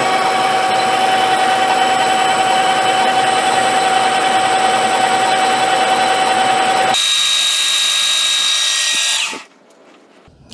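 Metal lathe running in reverse while turning an aluminum workpiece: a loud, steady mechanical whine with several held tones. About seven seconds in, the lower part of the sound drops away, leaving a thinner high whine, and a little after nine seconds the lathe spins down to a stop.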